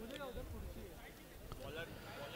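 Faint background chatter of several people's voices, with no single voice standing out.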